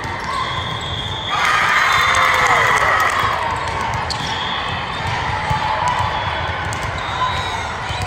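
Indoor volleyball rally sounds echoing in a large gym: short squeaks of sneakers on the hardwood court and sharp hits of the ball, over steady chatter from players and spectators.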